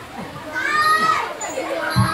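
Voices of onlookers, with a high, bending shout about halfway through, in a gap between the loud gamelan drum strokes; a drum is struck again right at the end.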